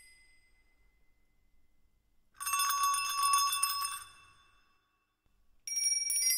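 Small metal percussion shaken in a burst of bright, bell-like jingling and ringing, starting a little over two seconds in and lasting about a second and a half. The sound of the burst before it fades out over the first second, and another burst begins near the end.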